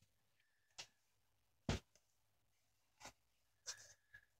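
Near silence broken by four faint clicks and knocks of handling, the loudest a little under two seconds in.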